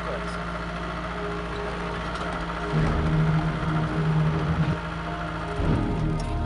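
Car engine and road noise heard from inside the cabin while driving on a rough road. About three seconds in, music starts over it.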